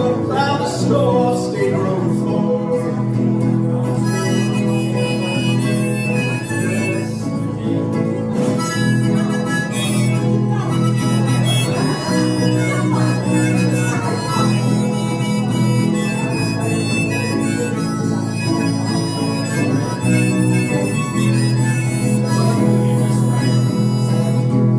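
Live acoustic music, an instrumental break with no singing: a small acoustic string instrument plays under a lead melody of long held notes.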